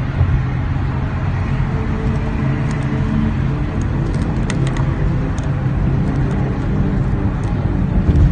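Steady road and engine noise of a car cruising on a freeway, heard from inside the cabin, with a few faint ticks partway through.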